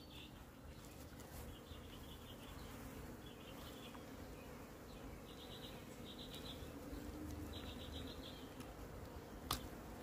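Faint insects chirping in short, high pulsed trills, repeated every second or two. A single sharp crack near the end as the armadillo's tail bone is twisted until it snaps.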